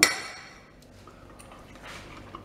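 A fork and knife cutting through a fried breaded turkey cutlet on a plate: a sharp clink at the start that dies away quickly, then faint scraping.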